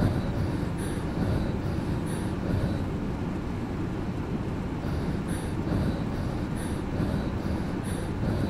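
Low, steady rumbling noise with a faint high swish repeating about every second and a quarter, the swishes dropping out for a few seconds in the middle.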